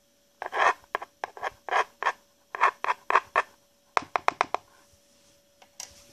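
A coin scraping across the bottom of a wet plastic gold pan, pushing gold flakes around in about a dozen short strokes, with a quicker run of light scrapes about four seconds in.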